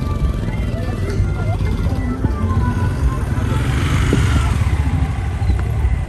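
Road and engine rumble inside a moving vehicle, with music playing quietly underneath. A hiss swells and fades about halfway through.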